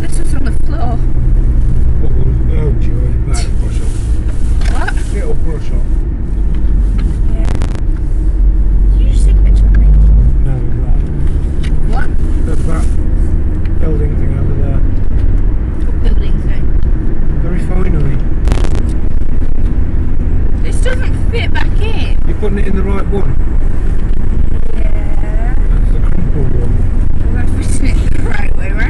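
Car interior noise while driving: a loud, steady low rumble of engine and road noise inside the cabin.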